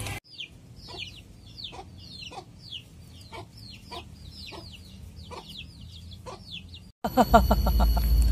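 Chickens clucking: a string of short calls, about three a second, that starts and stops abruptly.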